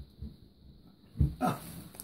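Oriental kitten giving two short, loud cries a little over a second in, the second rising in pitch.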